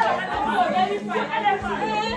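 Chatter of several women talking over one another in a room, with a low steady hum beneath.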